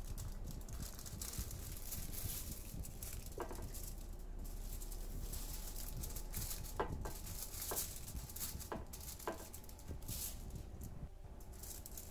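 Faint, irregular rustling and crinkling of aluminium foil as a shaped baguette is slid off it onto a metal baking tray.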